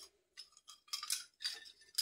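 Metal medals clinking lightly against each other as they are handled, a few faint clinks scattered through the two seconds.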